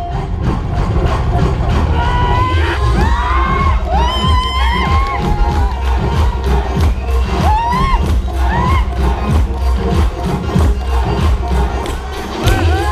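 Loud music with a heavy, steady beat for a stage dance performance, with a crowd cheering and several short rising-and-falling shouts and whoops over it, most between about two and five seconds in and again near eight seconds in.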